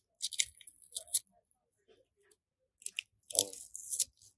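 Short crackly rustles and clicks of hands handling a Mamiya 645 film insert and a 120 film roll, in a few brief bursts: one just after the start, one about a second in, and another near the end.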